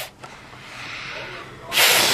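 A child blowing at birthday candles: a faint hiss of breath, then a loud rush of air across the microphone near the end.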